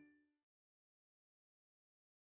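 Silence between two songs: the last note of a children's song dies away within the first half second, then there is nothing at all.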